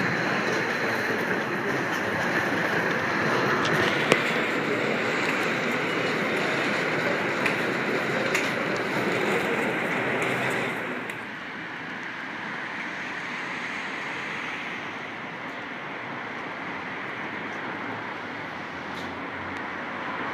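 Steady hum of urban road traffic, louder for the first ten seconds and then dropping to a quieter, even level, with a single sharp click about four seconds in.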